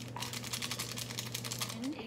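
Plastic seasoning packet crinkling as it is torn open and squeezed out: a quick run of small dry crackles.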